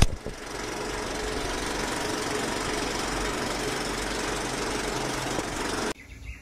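Film projector sound effect under a countdown leader: a sharp click, then a steady, fast mechanical clatter with hiss that cuts off suddenly near the end.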